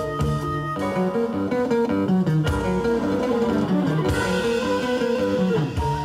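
Avant-rock band playing live: electric guitar and flute over bass and drums. Just under a second in, the music moves into a busy run of quick short notes, and a bright wash in the highs joins about four seconds in.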